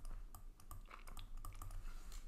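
Faint, irregular clicks and taps of a stylus on a pen tablet as digits are handwritten.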